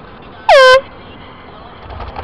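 A short, loud vehicle horn honk, about a quarter second long, sliding down in pitch before holding steady, over low road noise.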